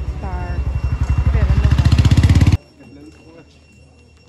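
Motorcycle engine running close by, its even low pulsing growing louder and quicker, then cut off abruptly about two and a half seconds in.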